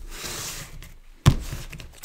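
A tarot card slid off the top of the deck with a soft papery swish, then a single thump on the table about a second in, with a few light clicks after it.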